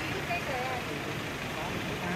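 A few faint voices talking in short snatches over a steady background of street noise.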